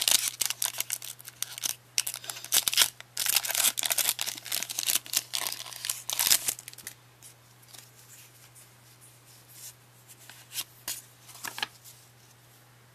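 Foil booster-pack wrapper being torn open and crinkled by hand, a dense crackling tear for about seven seconds, then only faint scattered rustles and clicks.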